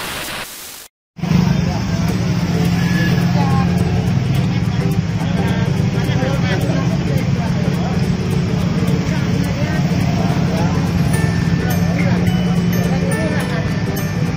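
A short burst of glitch static, a brief dropout, then loud, steady street ambience: the low hum of traffic and vehicles with a babble of voices.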